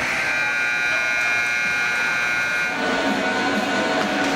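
An ice rink's horn or buzzer sounding one steady, held blast for nearly three seconds, then cutting off, leaving the noise of the rink and crowd.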